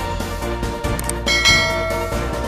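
Background music with a short click and then a bright bell chime ringing out about halfway through: the notification-bell ding of a subscribe button animation.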